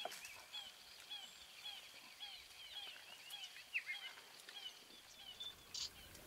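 A bird in the bush calling over and over, a short curved call repeated about twice a second.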